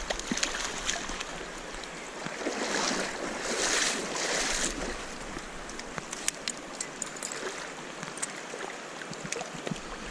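Creek water running, with a louder stretch of splashing from about two and a half to five seconds in as a trout is landed in a landing net. A few light clicks and taps of handling follow.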